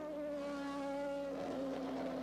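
Formula One car engine running at high revs, a steady engine note that dips slightly in pitch near the end.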